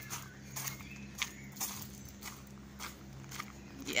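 Footsteps on a dry dirt path, about two steps a second, over a faint steady low hum.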